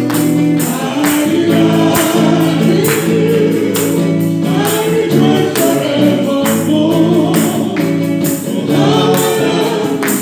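Gospel worship song with a woman singing lead into a microphone, backed by electric guitar and a steady percussion beat.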